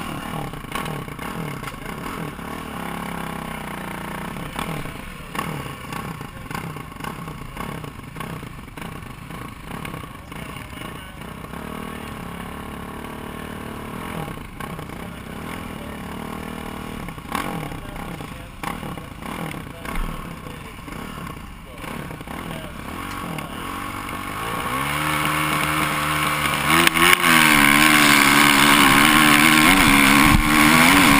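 Kawasaki KX450F four-stroke single-cylinder motocross bike running at the start line with short throttle blips, then launching near the end and revving hard at full throttle, the pitch climbing, dropping at a gear change and climbing again.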